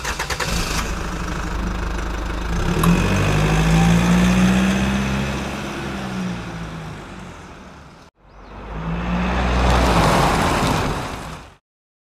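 A school bus engine sound effect: the engine revs up and pulls away, then fades out about eight seconds in. After a short break comes a second, shorter pass that rises and fades.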